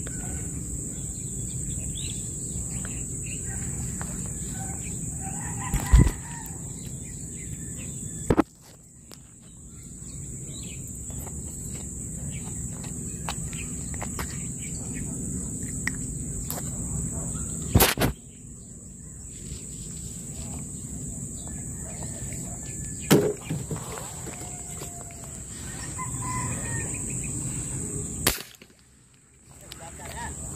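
Outdoor rural ambience: a steady high-pitched insect drone over low background noise, with faint bird calls, likely chickens, and several sharp knocks scattered through it.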